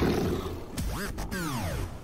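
A monster's roar over music on a TV teaser soundtrack. The roar sweeps down in pitch and cuts off just before the end.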